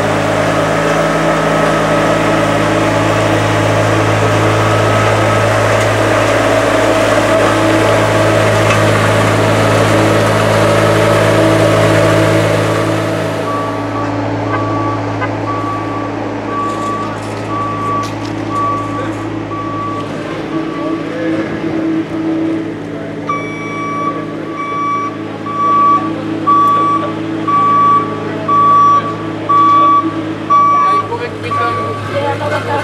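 Engine of a small ride-on tandem road roller running steadily, dropping in level about halfway through. In the second half its reversing alarm beeps about once a second as it backs up.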